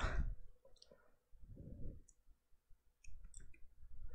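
A few quiet, scattered clicks at a computer, with a quick cluster of them about three seconds in, as the trading screen is switched to another stock's chart.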